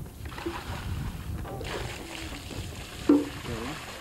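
Water poured out of a bucket, splashing steadily and growing louder about a second and a half in. About three seconds in a short, loud call cuts in.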